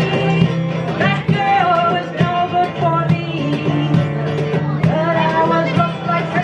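Live acoustic folk song: a woman singing over a strummed acoustic guitar, with hand-played cajón percussion keeping the beat.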